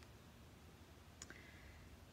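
Near silence: faint outdoor quiet with a single faint click about a second in, followed by a faint high steady tone.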